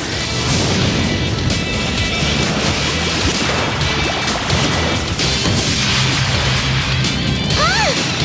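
Cartoon fire-blast and crash sound effects with dense rumbling hits, over dramatic action music. High gliding squeals come in near the end.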